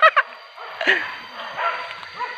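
Hunting dogs yelping and barking on a wild boar hunt: short calls that rise and fall in pitch, two right at the start and another about a second in, with fainter ones near the end.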